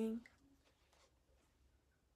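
A woman's voice trailing off at the very start, then near silence: quiet room tone with a few faint ticks.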